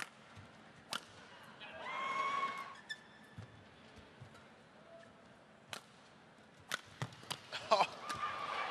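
Badminton rally: rackets striking the shuttlecock with sharp cracks, a few spread out at first and then several in quick succession near the end. A short squeal sounds about two seconds in.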